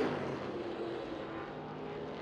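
Supermodified race car engine at speed, heard from a distance as a fairly quiet, steady drone.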